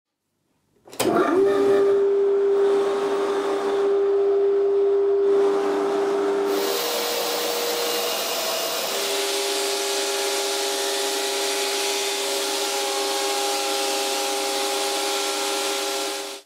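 Workshop dust collector running: a steady motor-and-fan tone over a hiss of air rushing through the ducting. It starts about a second in, and the tone shifts briefly around the middle before settling again.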